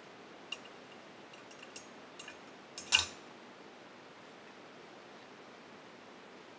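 A few light clicks, then one louder clink about three seconds in, with a brief glassy ring: a steel nail knocking against the inside of a glass test tube as it is put in.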